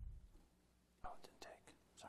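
Near silence with faint, off-microphone speech, a few short words about a second in: voices in a council chamber during a roll-call vote.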